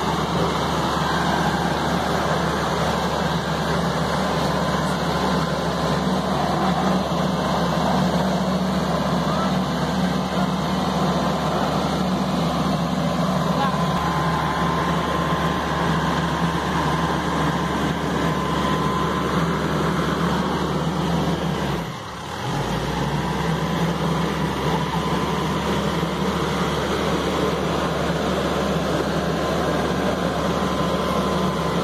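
Mitsubishi L200 Triton pickup's engine running steadily under load while it tows a car up a muddy hill, with a brief dip in level about two-thirds of the way through.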